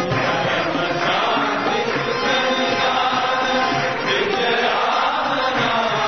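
Many voices chanting a devotional bhajan together, a continuous sung chant.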